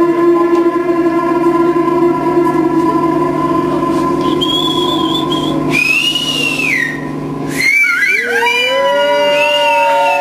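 Live electronic music on synthesizer: a steady drone of several held tones for about six seconds, joined by a high whistling tone near the middle. The drone then drops out, and whistle-like tones sweep down and waver up and down in pitch.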